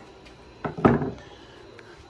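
Two short knocks about a quarter second apart, the second the louder, as a large screwdriver is handled at a bare air-cooled VW engine case on a workbench.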